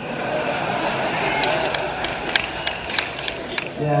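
Theatre audience laughing and murmuring, with a run of about eight sharp hand claps, roughly three a second, in the middle.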